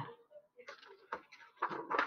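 A paper picture-book page being turned by hand: a few short, faint rustles and crinkles of paper.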